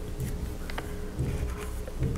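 Faint handling sounds of cotton macramé cord being pulled tight into a knot and pressed down on a glass board: soft rustles and a few light ticks over a low rumble.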